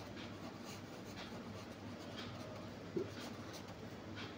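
Marker pen writing on paper, faint scratchy strokes as the words are written out, with one brief louder blip about three seconds in.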